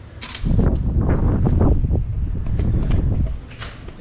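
Handling noise on the camera's microphone as the camera is moved about: a loud, pitchless rustling rumble lasting about three seconds, with a brief sharp hiss just before it starts and another just after it ends.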